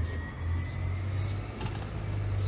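A few small clicks, about half a second apart, from a fork in a plastic food container and from chewing, over a steady low rumble.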